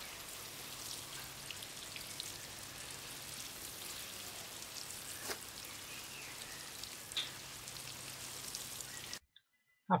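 Water showering from a metal watering can's rose onto sweet pea foliage and soil: a steady pattering spray that cuts off suddenly about nine seconds in.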